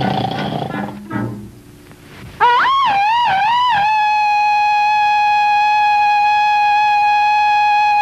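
A lion roars briefly at the start. About two and a half seconds in, a woman gives a loud, high call that warbles about four times and then holds one long high note for some five seconds.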